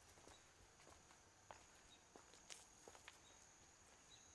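Near silence: faint, irregular footsteps of a person walking on stone paving and dry ground, with a faint steady high-pitched tone underneath.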